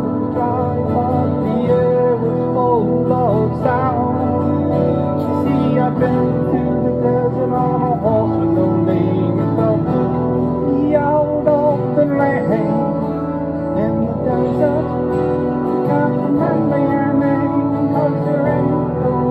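Instrumental passage of live acoustic music: a 12-string acoustic guitar played over sustained low bass notes and synthesizer backing, with no vocals.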